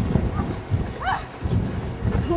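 Wind buffeting the microphone in a gusty low rumble, with a short, high rising call from a distant voice about a second in.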